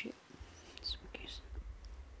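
Faint rustling and a low handling rumble as a person shifts and stretches to reach for a notebook, with a soft breath or murmur about a second in.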